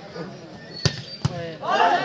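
A volleyball struck twice with sharp smacks, about a second in and under half a second apart, during a rally after a spike at the net; a man's voice calls out near the end.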